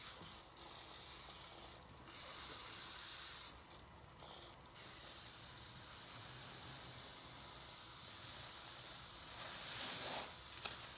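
A soap-soaked sponge squeezed and rubbed in thick foamy bathwater: a steady crackling fizz of soap suds, with squishing and water running off the sponge. The fizz drops away briefly a few times in the first half and gets louder near the end.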